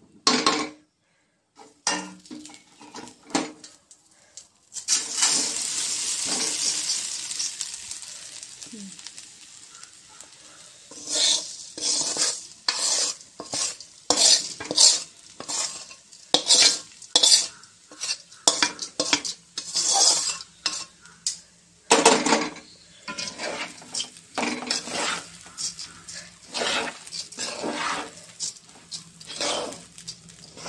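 Hot ghee in a steel pot sizzles suddenly about five seconds in as the rice goes in, the sizzle dying down over about five seconds. Then a metal spoon scrapes and knocks against the steel pot in a steady run of strokes, stirring the rice into the ghee.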